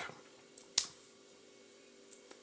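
Quiet room tone with a faint steady hum, broken once by a single short click a little under a second in.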